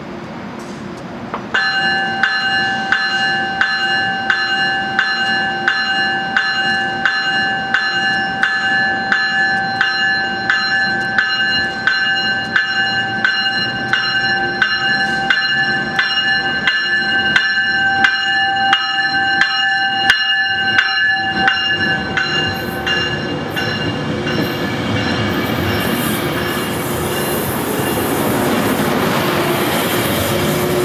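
A bell rings in quick, even strikes for about twenty seconds and then stops. After that the rolling noise of a Metrolink bi-level commuter train builds as its coaches pass close by.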